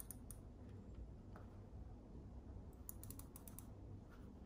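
Faint clicking from a handheld wireless steering-wheel remote being worked to set volume: a couple of single clicks at first, then a quick run of about six clicks about three seconds in, over a low room hum.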